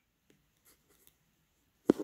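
Mostly near silence with a few faint small ticks, then a single sharp click just before the end.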